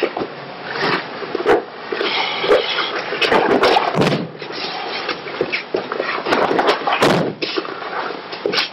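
Thuds and slaps of a body thrown with a hip throw (o goshi) and landing on a training mat, with several sharp knocks and the rustle of heavy uniforms.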